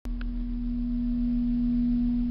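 Elevator car's steady low hum, one unchanging tone that starts suddenly.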